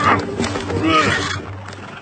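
An animated seabird squawking, two harsh calls that bend up and down in pitch, the second ending about a second and a half in.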